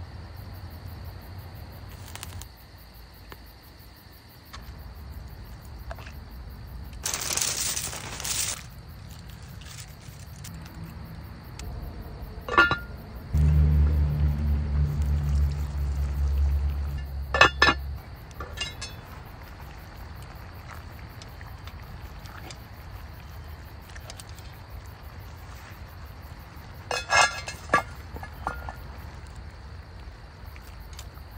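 Cooking at a cast-iron Dutch oven over a campfire: metal tongs clinking against the pot a few times, and water poured into the pot for several seconds in the middle. Crickets chirp steadily behind.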